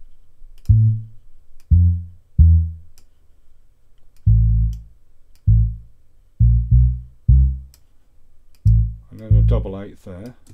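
Single notes of a deep sampled dub bass, about ten of them at uneven intervals, each sounding briefly and dying away, as notes are placed and dragged in a piano roll to write a reggae bass line, with faint mouse clicks between them. A brief wavering higher sound joins the bass near the end.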